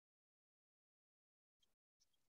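Near silence: the audio is essentially blank, a digital pause in the recording.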